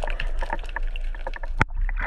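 Underwater water noise as a diver moves with a speared fish: a steady rushing, crackling sound full of small clicks, with one sharper knock about one and a half seconds in.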